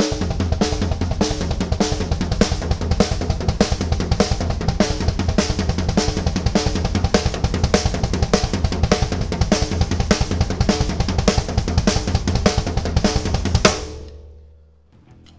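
Acoustic drum kit: fast single strokes of the hands on the snare and floor tom alternating with a single kick pedal, an even, dense rhythm that stops abruptly near the end, leaving the drums ringing.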